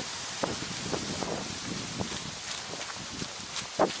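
Footsteps and rustling through forest grass and undergrowth as a person starts walking, then jogging, over a steady outdoor background hiss.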